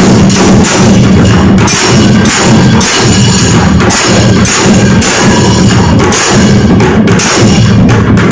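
A group of shoulder-slung cylindrical drums played with sticks in a loud, fast, steady rhythm, with small hand cymbals clashing and ringing over them.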